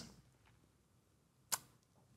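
Near silence broken by a single short, sharp click about one and a half seconds in.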